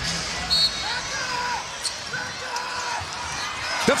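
Basketball arena ambience during live play: crowd noise with short high squeaks of sneakers on the hardwood and a few sharp knocks.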